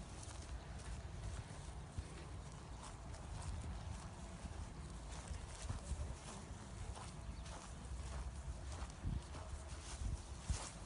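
Footsteps of several people walking through long grass, a run of irregular soft scuffs and thuds over a steady low rumble.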